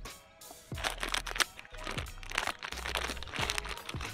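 A plastic instant-noodle packet crinkles and the dry noodle block crunches as it is handled. The rustling and crackling comes in quick bursts from about a second in, over background music.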